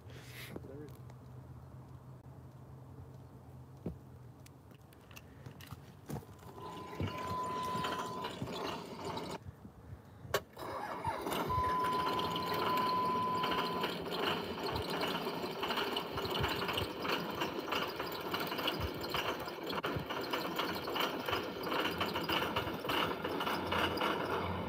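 A cold start of a Dodge pickup's diesel engine, 20 degrees out, played back through a phone's speaker. From about halfway through the engine runs roughly, missing on several cylinders. A steady beep-like tone sounds twice along the way.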